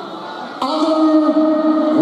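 An eerie held note comes in over the stadium PA about half a second in and stays steady in pitch, with a short glide at the very end.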